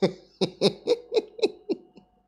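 A man laughing: about eight short, evenly spaced 'ha' sounds, about four a second, each dropping in pitch.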